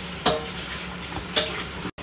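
A ladle stirring and pouring soup in a steel pot over a steady simmering hiss, with two short knocks of the ladle, one just after the start and one past the middle. The sound cuts off abruptly near the end.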